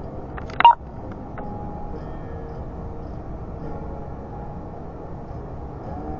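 A single short, loud electronic beep about half a second in, over steady background noise.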